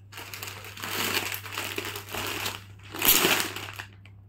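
Clear plastic packing bag around a folded suit crinkling as it is handled and laid flat on a table, in several swells, loudest about three seconds in.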